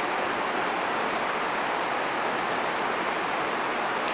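Steady, even hiss of room background noise, with nothing else happening.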